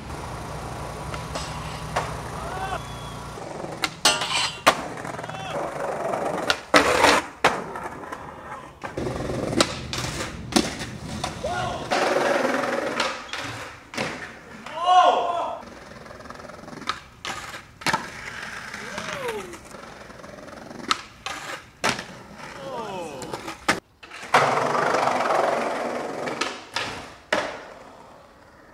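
Street skateboarding: wheels rolling on concrete, sharp clacks of tail pops and board landings, and a stretch of grinding where a skateboard slides along a rail. Voices call out between the tricks.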